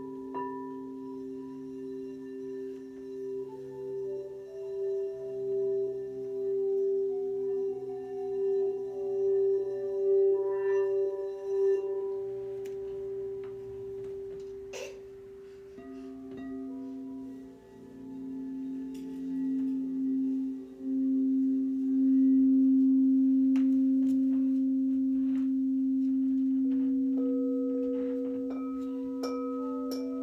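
Crystal singing bowls played with a mallet: several long ringing tones that overlap and waver in loudness. A lower bowl takes over as the loudest note about halfway through, and a higher one joins near the end.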